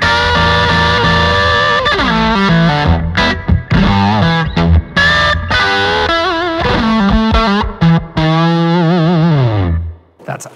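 Electric guitar, a Gibson Les Paul played through a Blackstar St. James valve amp, playing lead lines. It holds sustained notes with bends and wide vibrato, and near the end a held note slides down and cuts off.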